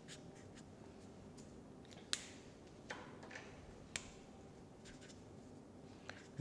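Felt-tip marker writing on a sheet of paper: faint scratchy strokes, with a few sharper ticks about two, three and four seconds in.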